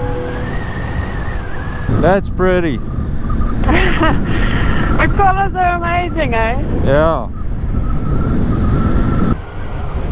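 KTM adventure motorcycle riding along a gravel road: a steady rumble of engine, tyres and wind on the microphone. A person's voice comes in over it in several short stretches.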